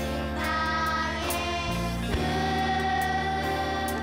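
Children's choir singing a slow Christian worship song over an instrumental backing, holding one long note through the second half.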